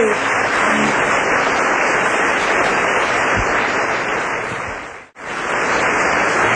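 Club audience applauding after a song. The applause briefly drops out a little after five seconds in, then resumes.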